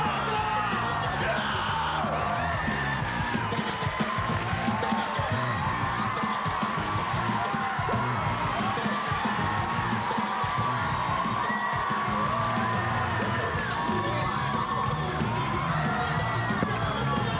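A large audience cheering, yelling and whooping in a big hall, over music playing at a steady level.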